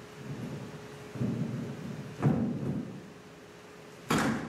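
Low rumbling with a sharp knock or thud about two seconds in, the loudest moment, and a faint steady hum that stops after about a second.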